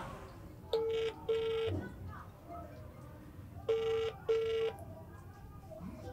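Mobile phone ringback tone on an outgoing call, heard through the phone's speaker: two double rings about three seconds apart, each a pair of short beeps at one steady pitch. It is the signal that the other phone is ringing and the call has not yet been answered.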